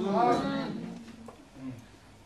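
A man's voice drawing out the end of a word and trailing off, followed by a short, faint low hum near the end.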